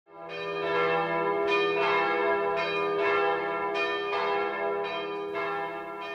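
Church bells ringing, with a new strike every half second to second and the tones overlapping as they ring on.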